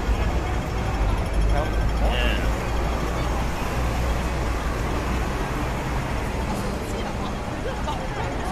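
Busy city street ambience: a steady rumble of traffic mixed with the voices of passing pedestrians.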